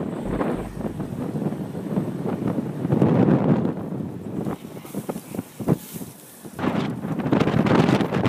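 Wind buffeting the phone's microphone in a moving car, with irregular rustling and crackling throughout; it drops briefly quieter about six seconds in.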